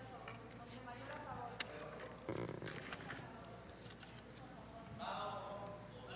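Faint murmur of voices with a few light clicks and knocks over a steady low hum.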